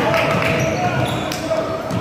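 A basketball being dribbled on a hardwood gym floor, heard among spectators' voices echoing in a large gym.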